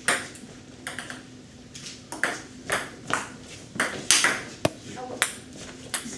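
Table tennis rally: the ball clicks off paddles and the table about twice a second.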